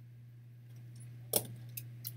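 A steady low hum with a sharp click about a second and a half in and a fainter tick just after, as a marker pen is lifted off the paper on the desk.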